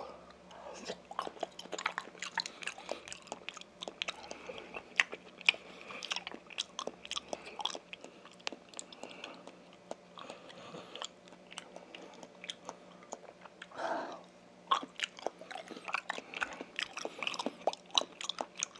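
Close-miked chewing of raw rockfish sashimi, with a steady run of small mouth clicks throughout. A brief hum of the voice comes about fourteen seconds in.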